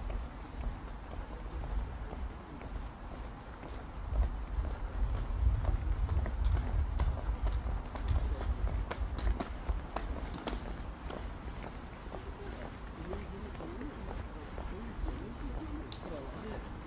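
Outdoor walking ambience: wind rumbling on the microphone, strongest at the start, with a run of sharp clicks of footsteps on the path through the middle. People talk in the distance near the end.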